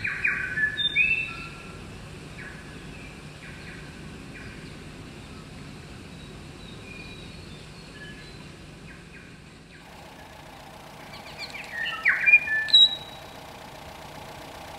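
Birds chirping and calling outdoors, short quick chirps clustered at the start and again about twelve seconds in, over a quiet background.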